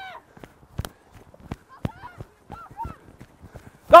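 Running footsteps on grass, a string of irregular soft thumps and clicks, with faint shouts from young players in the background.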